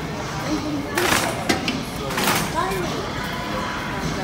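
Indistinct voices with no clear words, broken by two short hissing bursts about one and two seconds in.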